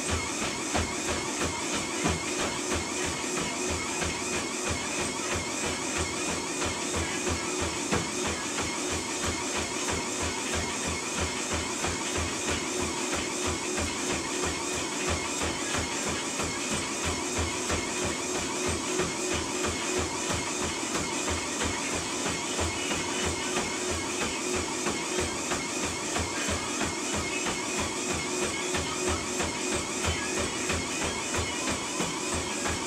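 Quick, even footfalls on a motorized treadmill's belt, about three strides a second, with the treadmill running steadily underneath. Music plays along with it.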